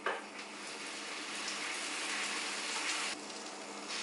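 Buttered bread slices sizzling butter side down in a hot grill pan, with vegan butter spread frying under them. It is a steady frying hiss that grows slowly louder, then eases a little near the end.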